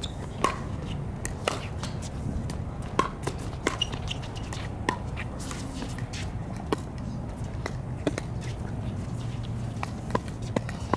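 A pickleball rally: paddles striking the plastic ball in sharp pops, about one a second at an uneven pace, over a steady low rumble.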